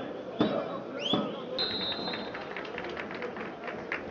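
Live pitch-side sound of a football match: players shouting and calling, a referee's whistle blown for about a second in the middle, and a few sharp knocks of the ball being kicked.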